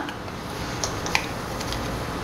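A metal spoon dipping into a paper packet of dry yeast: faint rustling with a couple of small ticks about a second in, over low room hiss.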